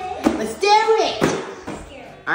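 Speech only: a high-pitched child's voice and an adult woman talking, with a couple of brief soft knocks.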